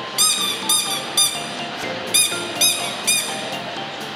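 Rubber duck squeaking six times, in two quick sets of three, over steady background music.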